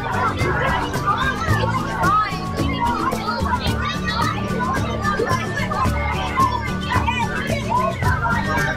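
Crowd of children chattering and calling out over one another in a large room, over background music with a steady beat.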